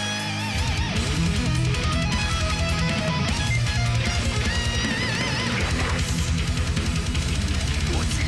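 Melodic death metal recording with an electric guitar solo: held lead notes bent and shaken with wide vibrato over fast drumming and rhythm guitar. The drums come in about half a second in.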